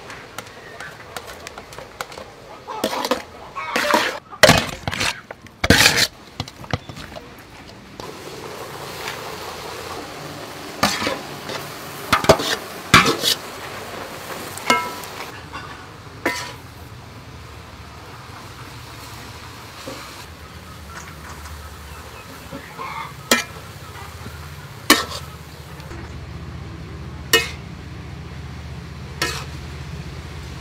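A metal utensil clinking and scraping against a metal mixing bowl as instant noodles are tossed with seasoning, then a steady sizzle from about eight seconds in as the noodles stir-fry in a wok, with sharp clinks of the utensil on the pan.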